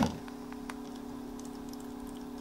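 A steady low hum with a few faint, light clicks.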